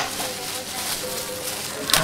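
Plastic wrapper of a wet hand towel (oshibori) being handled and torn open, with a sharp crinkle near the end, over background music and faint chatter.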